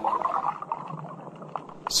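A pause between lines of chanted Arabic recitation: the voice's echo fades away, with a few faint clicks, and the next chanted line begins right at the end.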